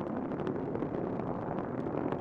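Space Shuttle ascent rocket noise: the solid rocket boosters and main engines making a steady rushing rumble with faint crackle.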